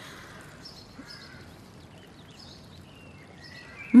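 Scattered short bird chirps over a steady outdoor background ambience.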